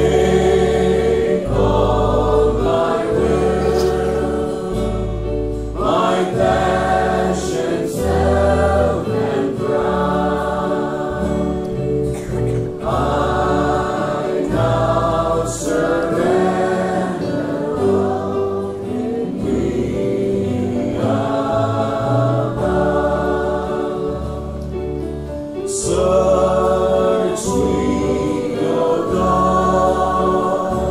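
Christian worship music: a choir singing in slow phrases over sustained low bass notes.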